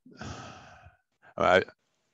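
A man sighs: a breathy exhale into a headset microphone that fades out over about a second. He follows it with a short spoken 'I'.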